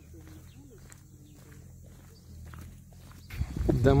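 Faint footsteps walking along a path, with faint distant calls in the background; a woman starts speaking near the end.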